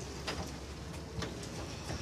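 Low steady background hum with a couple of faint short knocks, one about a quarter second in and one a little after a second.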